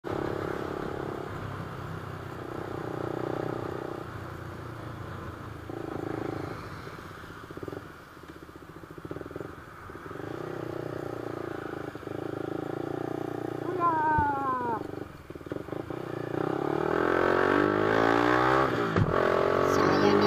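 Motorcycle engine running under way. The revs drop quickly about two-thirds of the way in, then climb steadily over the last few seconds as the bike accelerates and the sound gets louder.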